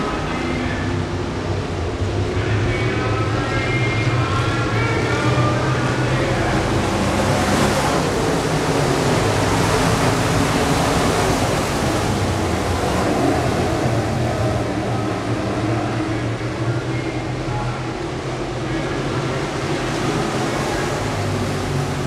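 A pack of IMCA Modified race cars' V8 engines running hard at racing speed around the oval. The sound builds to its loudest from about 7 to 13 seconds in, as a car passes close, then eases as the pack moves away.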